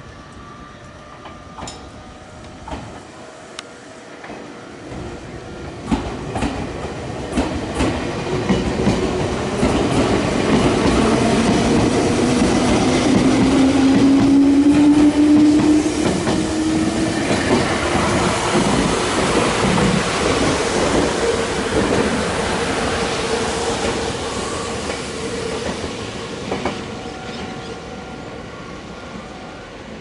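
Meitetsu 5000 series electric train pulling out and passing close by. Its traction motor whine rises in pitch as it gathers speed, and its wheels click over the rail joints. It is loudest about halfway through and fades away near the end.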